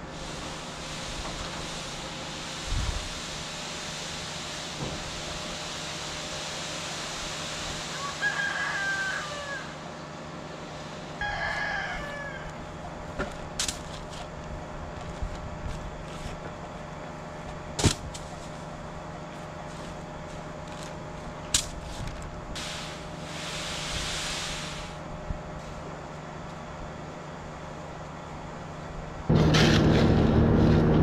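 A bird calling twice, about eight and eleven seconds in, over a steady low hum, with a few sharp knocks and stretches of hiss; it gets much louder just before the end.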